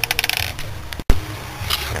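Metal spanners clinking together in a rapid run of light clicks as one is sorted out to fit a rounded-off coolant bleed screw; the clinking stops about a second in.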